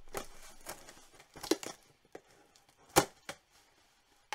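Cardboard mailer box being torn open and handled: a tearing rustle at the start, then a few short sharp snaps and rustles of the cardboard, the loudest about three seconds in.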